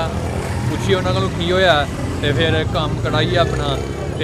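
A man speaking in short bursts, over a steady low rumble of street noise.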